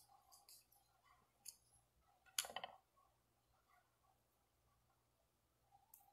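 Faint clicks and soft rustles of fingers and nails working synthetic crochet braiding hair at the scalp, pulling it through small pre-made loops, with one louder short rustle about two and a half seconds in.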